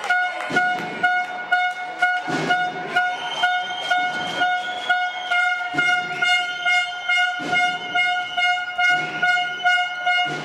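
Horns in a handball crowd held in a long steady blare, over rhythmic beats about twice a second from drumming or clapping in the stands.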